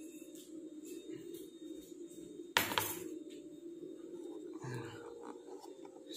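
A single sharp knock of a hard object, about two and a half seconds in, over a steady low hum in the room.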